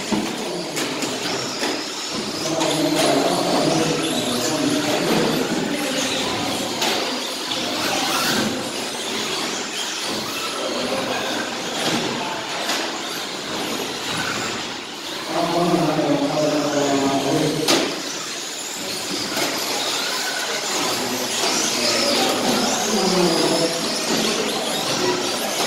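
Electric radio-controlled short-course cars racing on an indoor track: high motor whine with scattered clicks and knocks from the cars, and people talking in the background at times, clearest about two thirds of the way through.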